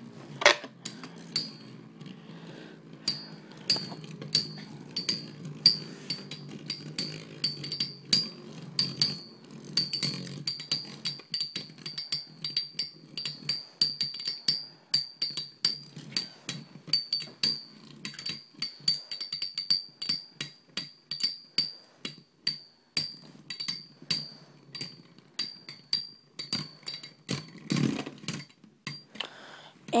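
Two metal-wheeled Beyblade spinning tops, Earth Eagle and Flame Libra, spinning against each other in a plastic stadium. They clash with many irregular sharp clicks over a steady high whine of spin, and a low rumble of the tips on the stadium floor fades after about ten seconds. The whine dies out near the end as the tops slow down.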